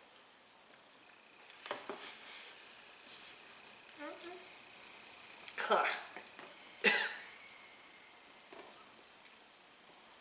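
Two people breathing in alcohol mist from latex balloons and holding it, with a few breaths out, a short cough and brief wordless voice sounds.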